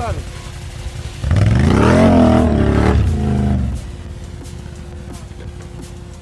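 ATV engine revving hard in mud: about a second in it rises sharply in pitch, holds high with a wavering note for about two seconds, then drops back to a low idle.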